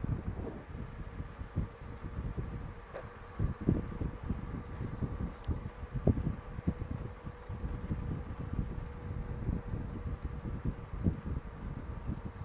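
Wind buffeting the microphone of a Honda Gold Wing trike moving at road speed, with a faint steady hum from the bike's flat-six engine underneath.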